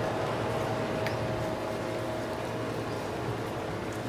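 Steady outdoor background noise with a low hum and faint steady tones, and a faint click about a second in.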